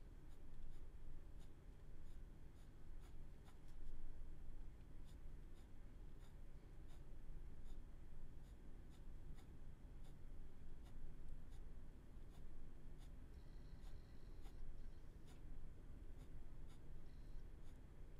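Ballpoint pen tip working on paper, a faint steady run of light ticks and scratches as it shades a drawing with small repeated strokes.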